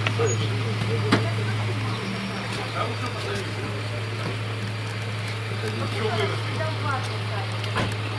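A car engine running with a steady low hum, with faint voices in the background.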